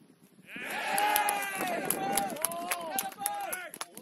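Several voices shouting together in a sudden outcry. It starts about half a second in and holds for about three seconds as a shot goes in at goal, with a scatter of sharp clicks near the end.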